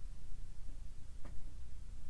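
Quiet room tone: a low steady hum under faint hiss, with one faint soft tick a little past halfway.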